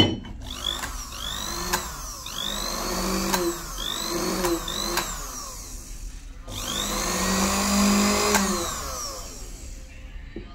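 Usha sewing machine motor running under its foot-pedal speed regulator, its whine rising as it speeds up and falling as it slows in several short runs, then one longer, louder run of about three seconds near the end. A few sharp clicks come between the runs.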